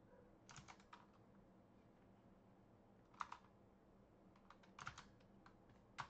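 Faint clicks of a computer keyboard in a few short clusters: several about half a second in, one near the middle and a small run towards the end, over near silence.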